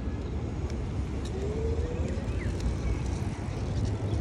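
Steady low rumble of wind and street noise on a phone microphone while riding a bicycle, with a faint rising whine about a second in.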